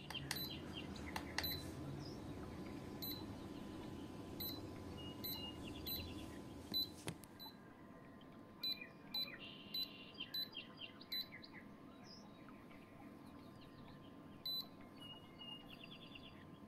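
A series of short, high-pitched electronic beeps at irregular intervals, with birds chirping in the background. A low steady noise drops away about halfway through.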